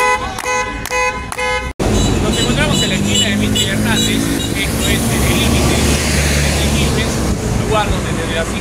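Car horns honking in rapid repeated toots, a honking protest. Shortly before two seconds in the sound cuts to street traffic, with a heavy vehicle's engine, likely a city bus, running with a low rumble that swells through the middle, and voices in the background.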